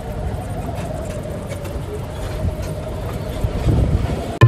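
Open electric passenger cart driving along, with a steady low-pitched motor whine over the low rumble of the ride.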